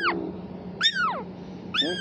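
Tiny kitten mewing: short high-pitched cries that fall in pitch, one tailing off as it begins, another about a second in and a third near the end.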